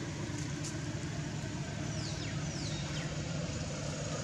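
A steady low engine hum runs throughout. Two brief high chirps fall in pitch a little after halfway.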